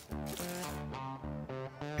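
Background guitar music, a run of plucked notes.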